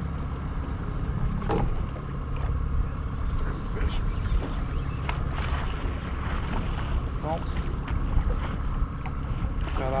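Steady low rumble of wind on the microphone and waves against a fishing boat's hull, with a few light knocks and clicks of gear in the boat.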